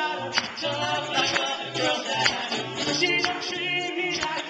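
A cappella group singing live through microphones: layered vocal harmonies over a sung bass line, with a vocal-percussion snare hit about once a second.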